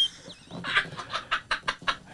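Men laughing hard and breathlessly: a quick run of short, breathy laugh pulses with hardly any voice in them.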